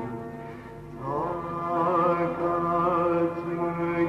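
Male voice singing a Turkish classical art song (a yürük semai in makam Mahur) over instrumental accompaniment. A new phrase enters about a second in, with long held notes that waver in ornaments.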